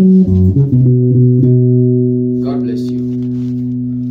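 Electric bass guitar playing a quick run of plucked notes from a sebene bass line, then one low note left to ring steadily to the end.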